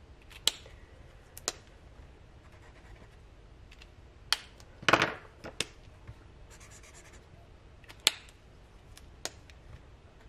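Sharp clicks and taps of marker pens being handled and swapped, about seven in all, the loudest about halfway through. Between them, faint scratching of a felt-tip permanent marker scribbling on notebook paper.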